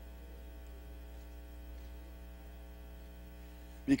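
Steady electrical mains hum with a faint buzz, unchanging throughout, until a man's voice begins at the very end.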